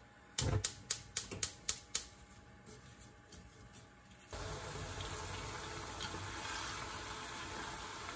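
Wooden chopsticks knock against a wok several times in quick succession as lotus root slices are stirred in oil. About four seconds in, a steady bubbling fizz of oil deep-frying the slices sets in suddenly and runs on.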